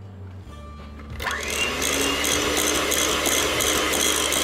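Electric hand mixer switched on about a second in and running steadily at speed, its beaters whisking egg yolk into creamed butter and sugar in a glass bowl.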